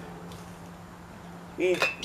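Low background noise with a faint steady hum, then a single sharp click near the end as the bottle and glass jar are handled.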